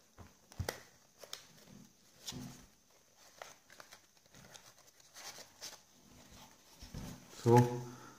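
Soft, scattered crinkles and clicks of folded origami paper being handled and pinched into shape, quiet and intermittent.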